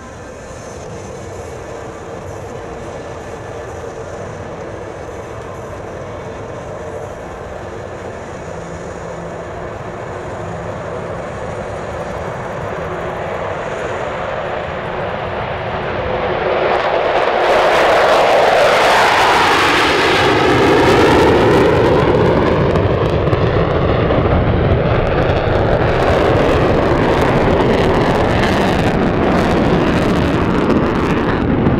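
Two Mitsubishi F-15J fighters' twin turbofan engines at takeoff power in a formation takeoff. The jet noise builds steadily as they roll down the runway, rises sharply about seventeen seconds in as they lift off and pass close by with a falling whine, then stays loud as they climb away.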